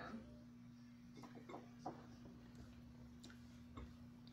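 Near silence: a faint steady hum with a few soft clicks and brief faint voice fragments.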